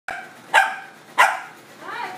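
A Lhasa Apso barking twice, two sharp barks about two-thirds of a second apart.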